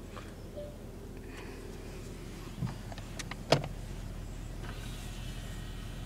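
Porsche Panamera S's 4.8-litre V8 idling steadily, heard inside the cabin. Midway there are a few sharp clicks and a louder knock, and near the end a small electric motor whirs faintly.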